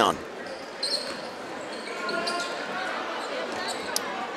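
A basketball being dribbled on a hardwood gym floor over the steady murmur of a crowd in the stands, with brief high sneaker squeaks and a sharp click just before the end.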